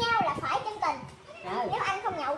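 Speech only: excited, high-pitched chatter of voices, with a short lull a little past the middle.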